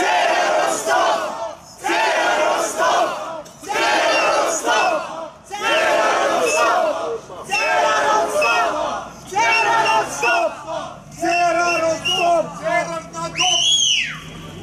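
A crowd chanting a short slogan in unison, about once every two seconds. Near the end a sharp whistle rises and falls.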